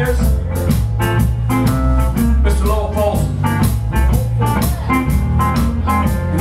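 Live blues band playing: electric guitar over drums with a steady beat, and a singer's voice near the start and end.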